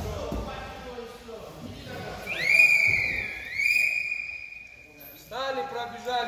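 A long whistle, about three seconds, that rises in pitch, dips once and then holds steady before cutting off. It comes as the wrestlers stop their bout, a stop signal in the drill.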